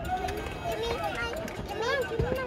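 Quiet, high-pitched voices talking, too indistinct to make out words.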